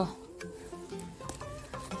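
Quiet background music with soft held notes, under faint rustling and snapping of leafy horseweed greens being picked by hand.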